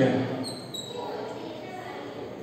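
Chalk writing on a blackboard: faint tapping and scratching, with a couple of brief thin squeaks about half a second in, after a man's voice trails off at the start.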